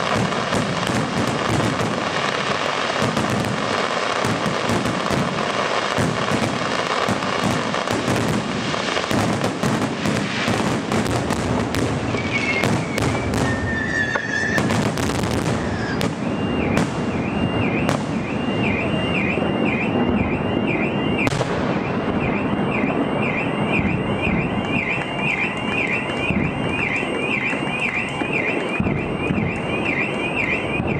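Fireworks display: aerial shells bursting in rapid, dense bangs and crackle, with a few short whistles just past the middle. From a little past halfway, an electronic alarm joins in, warbling in a repeating rise and fall with a brief break, while the bangs thin out.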